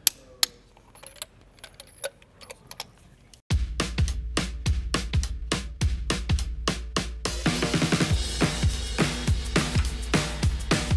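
A click-type torque wrench on a spark plug socket gives a sharp click as the plug reaches its torque setting, followed by a few lighter clicks. About three and a half seconds in, background music with a steady drum beat starts and fills out a few seconds later.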